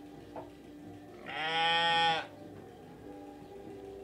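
A sheep bleating once: a single call of about a second, starting about a second in.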